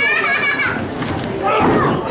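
Children in a wrestling audience shouting and yelling in high voices, louder about one and a half seconds in.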